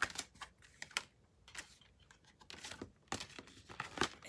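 Tarot cards being handled on a tabletop: irregular light clicks, taps and papery slides as cards are picked up and laid down.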